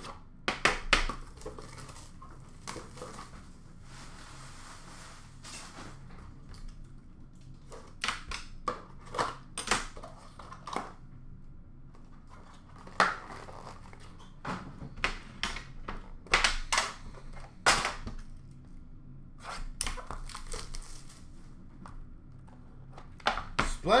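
Hands handling trading-card boxes and packaging on a glass counter: a string of sharp knocks and clicks, with short spells of tearing and crinkling.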